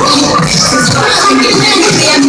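Live hip-hop concert music played loud and steady over an arena sound system.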